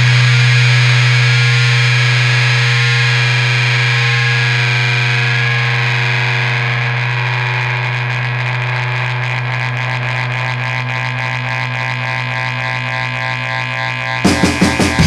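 Rock music breakdown: a distorted electric guitar chord, run through effects, held and ringing on one sustained chord and slowly fading. About halfway through, a fast, even wavering pulse comes into the ringing.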